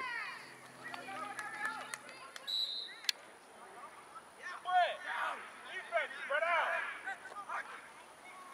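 Voices shouting and calling out across an outdoor youth football field, loudest in the second half, with a brief high-pitched tone and a sharp click about two and a half to three seconds in.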